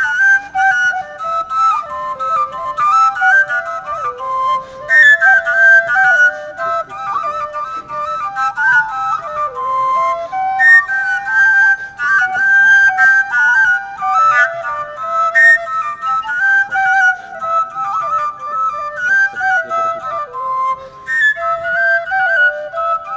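Wooden highland shepherd's flutes (fujarki) playing a quick folk melody with many short, fast-changing notes.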